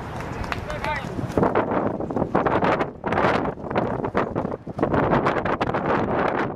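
Outdoor soccer-match sound: people shouting in a run of loud bursts, roughly one a second.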